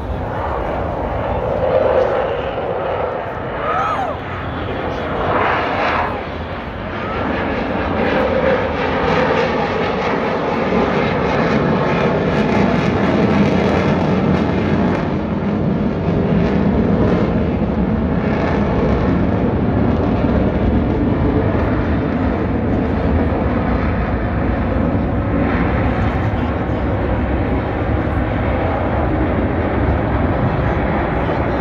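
Jet aircraft engine roar as a jet flies past: a loud, steady rushing sound that builds over the first several seconds and then holds.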